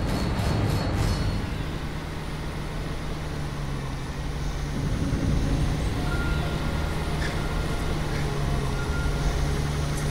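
Jeep engine running steadily at speed, a continuous low drone, with orchestral film music underneath.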